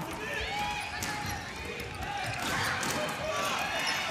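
Basketball being dribbled on an indoor hardwood court, the bounces coming as repeated short knocks, with voices in the arena behind.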